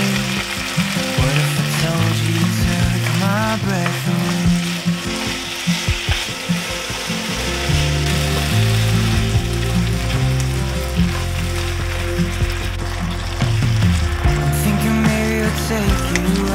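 Diced potato and onion with black bean paste sizzling as they stir-fry in a nonstick frying pan, stirred with a wooden spoon, under background music.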